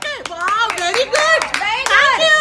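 A woman speaking rapidly in a high voice, broken by several sharp hand claps between her words.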